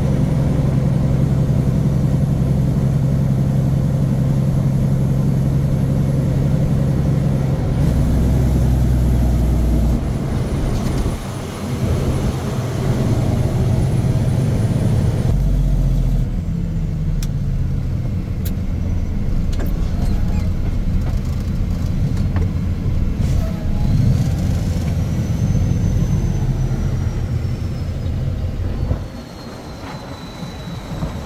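Diesel engine of a loaded International log truck heard from inside the cab while driving, a steady low hum whose note changes a few times, around 8, 11 and 15 seconds in, as the driver works through the gears of its 18-speed transmission. The sound drops off a little near the end.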